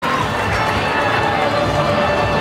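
Stadium crowd noise, steady and loud, with music playing over it.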